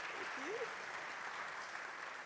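Audience applauding steadily, with one brief faint voice about half a second in.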